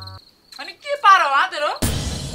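Crickets chirping in a steady high trill, with a short stretch of a voice about half a second in. Near the end a sudden loud hit cuts in.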